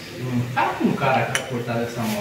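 A man talking indistinctly, with a light metallic clink a little past halfway through from an oiled piston being handled against the aluminium engine block.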